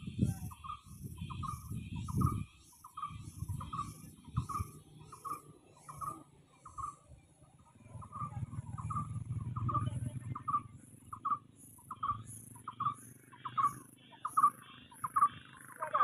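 A bird calling, one short note repeated steadily about two or three times a second, with faint high ticks in time with it, over a low uneven rumble.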